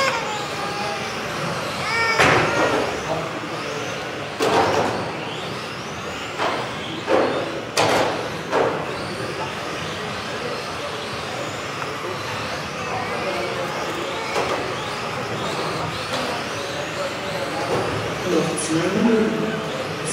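Radio-controlled racing cars running laps in a reverberant hall, their electric motors whining up and down as they speed up and brake, with a few sharp knocks along the way.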